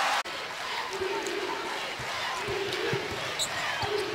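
Arena crowd noise with a basketball being dribbled on a hardwood court, a few separate bounces standing out over the steady hum of the crowd.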